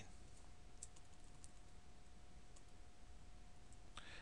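A few faint, scattered clicks of computer keyboard arrow keys being pressed to nudge an object, over a faint steady hum.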